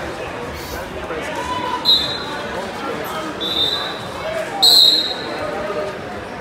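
Referee's whistle blown three times, a short blast and then two longer ones, the last the loudest, as a wrestling bout gets under way. Crowd chatter echoes through the gym.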